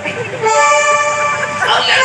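A loud, steady horn-like note with many overtones, held for about a second, from the stage music over the PA, then a short gliding sound near the end.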